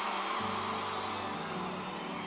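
Room tone of a large hall: a steady low hum under a faint even background noise.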